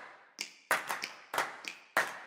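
A percussion beat of sharp clap-like taps, about three a second, each dying away quickly.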